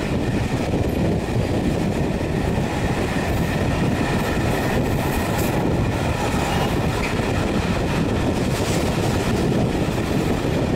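Steady rumble of a moving passenger train's wheels on the rails, heard from an open carriage window, with clickety-clack over the rail joints as it passes a freight train on the next track.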